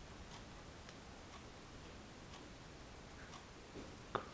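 Faint, regular ticks, about one a second, over quiet room tone.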